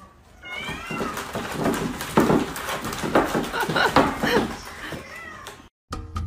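Kitten meowing repeatedly, high-pitched calls that bend in pitch, mixed with several sharp noisy bursts in the middle. The sound cuts off suddenly shortly before the end.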